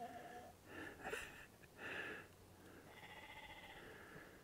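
Faint sheep bleats: a few short calls, about one and two seconds in.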